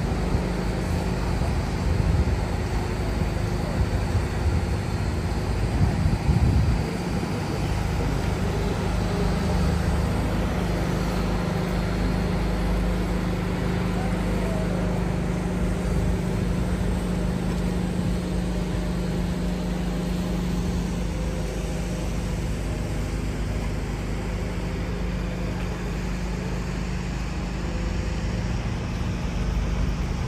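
Steady city traffic rumble with a low engine hum throughout, swelling briefly about six seconds in.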